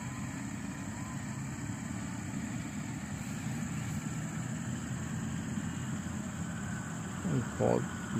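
Steady low engine hum with a constant high-pitched insect trill over it.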